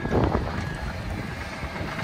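Side-by-side utility vehicle driving along a rough dirt track: a steady engine and rolling noise with wind on the microphone.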